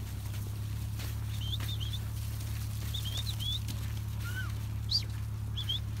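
Small birds chirping: short high calls, mostly in twos and threes, scattered through, over a steady low rumble.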